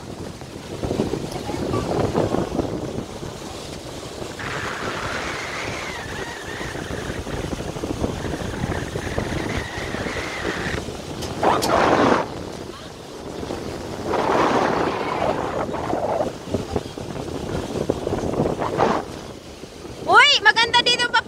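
Wind buffeting the microphone over water rushing past the hull and the steady run of a motor boat under way, swelling in louder gusts a few times.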